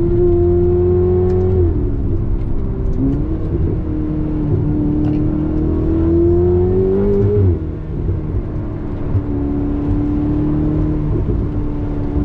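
Ferrari 488 Spider's twin-turbo V8 heard from inside the cabin: running at a steady pitch, dropping about two seconds in, then climbing steadily under acceleration for about four seconds before falling off sharply past the middle, and running steady again to the end.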